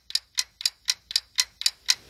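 Game-show countdown timer sound effect ticking evenly, about four ticks a second, while the answer is awaited.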